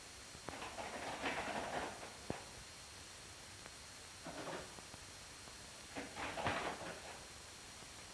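Faint clicks from the switches of a reaction-time test panel: two sharp ones about two seconds apart, then a weaker one, among a few soft, brief rushes of noise.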